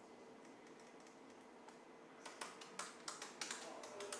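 Typing on a computer keyboard: after a couple of seconds of near silence, a quick run of key clicks starts about halfway through as an editor search is typed.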